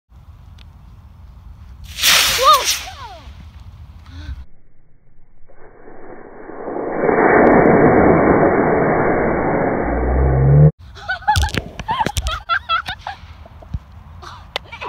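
Model rocket's solid-fuel motor firing at launch: a loud, steady rushing hiss that starts about halfway through, runs for roughly five seconds and cuts off suddenly. Excited voices and clicks follow it.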